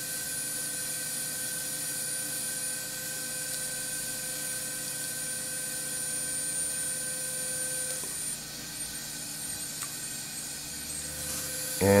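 Smoke evacuator nozzle drawing air with a steady hiss beside a radiosurgical pin electrode that is shaving a skin lesion, with a steady electronic tone from the radiosurgery unit while the electrode is active. The tone cuts off about eight seconds in and returns faintly near the end.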